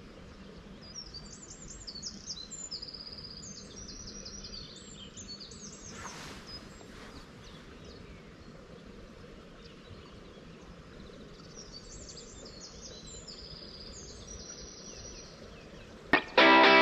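Songbirds singing in short repeated high phrases, in two spells, over faint steady outdoor background noise by a pond. There is a brief soft hiss about six seconds in.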